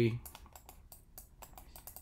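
Irregular quick clicking of computer keys, many presses in a row at a quiet level, with the tail of a spoken word at the very start.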